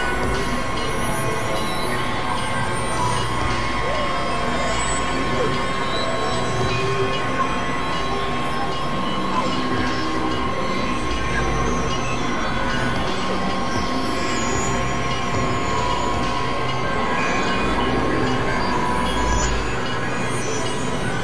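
Experimental electronic noise-drone music: a dense, steady wall of layered held tones with one high tone running throughout and a low rumble that swells a few times.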